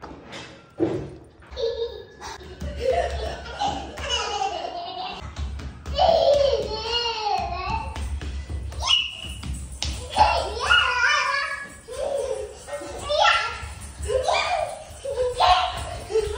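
Young children's voices over background music.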